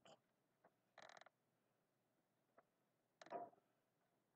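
Faint, short scratches of a felt-tip marker writing on paper: a brief scratchy stroke about a second in, a longer one about three seconds in, and a couple of small ticks between, in a near-silent room.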